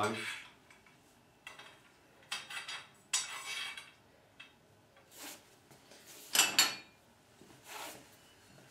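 Small steel bolts clinking and scraping in the slots of aluminium mill rails as they are slid into place: a handful of separate metallic clinks, the loudest a little over six seconds in.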